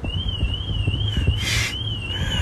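BMW car alarm siren set off from the key fob's panic button: a high warbling tone that wavers up and down about three times a second.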